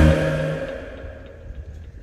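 A loud cinematic boom at the start that cuts off the soundtrack music, its reverberant tail ringing out and fading away over about a second and a half.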